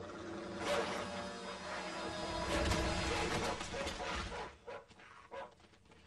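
Cartoon dog barking and snarling over background music, loud for about four and a half seconds, then dropping away.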